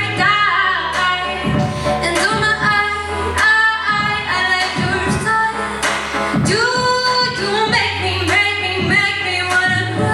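Choir of mostly female voices singing a pop song, with a held low bass accompaniment under the shifting vocal lines.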